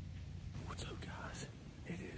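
A man whispering, starting about half a second in, over a steady low rumble.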